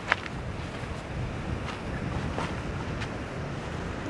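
Wind rumbling on the microphone over the steady wash of surf breaking on rocks below a sea cliff, with a few faint clicks.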